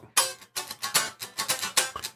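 Electric guitar strummed in quick, choppy funk-style chord strokes, about five a second, each chord cut short.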